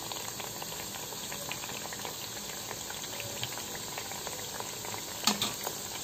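Thekua dough rounds deep-frying in hot oil in a steel pan: a steady bubbling sizzle with fine crackles. A brief louder sound comes about five seconds in.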